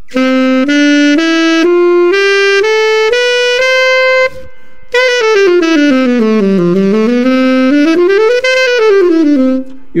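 Alto saxophone playing a C major (Ionian) scale: eight notes stepping up one octave, then, after a short break about four seconds in, a fast smooth run down below the starting note, back up to the top and down again.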